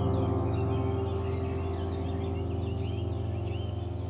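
Calm background music: a sustained chord that slowly fades, with bird chirps over it.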